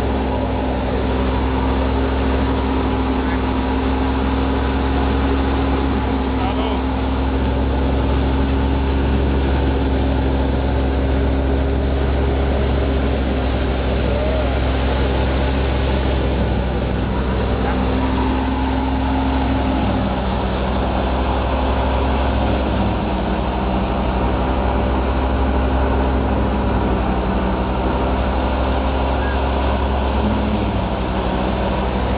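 An engine running steadily: a continuous low drone with a faint shift in tone about two-thirds of the way through.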